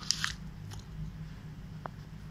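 A person biting into and chewing a piece of paper: a crinkly bite in the first moment, then only a few soft clicks as it is chewed.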